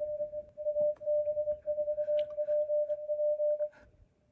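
Morse code (CW) signal from the Yaesu FTdx5000 HF transceiver's speaker: a single steady mid-pitched tone keyed on and off in short and long elements. It stops shortly before the end.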